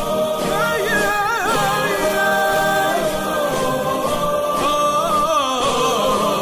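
Background music: an Arabic nasheed sung by a choir, holding long notes that bend and waver between lines of lyrics.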